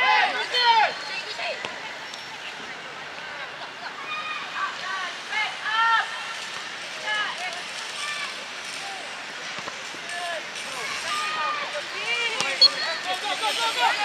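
Scattered shouts and calls from players and sideline at a youth football match, over a steady outdoor noise haze, with a single sharp knock near the end.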